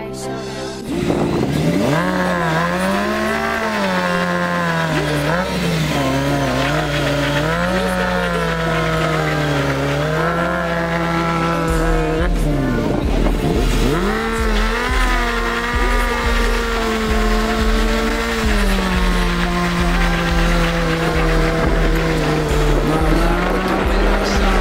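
Honda CBR600F4 inline-four engine revving hard, its pitch swinging up and down, falling low and climbing back twice, about a second in and again about halfway, as the rider works the throttle in a rolling burnout.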